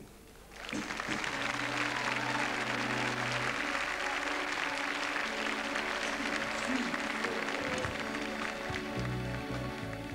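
A large audience applauds, starting about half a second in and carrying on throughout, while a band holds sustained notes underneath. Low bass guitar notes come in near the end.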